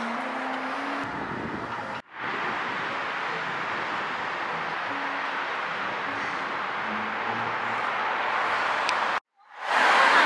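Steady outdoor background hiss with faint background music. The sound drops out briefly twice, at the cuts, and comes back louder near the end.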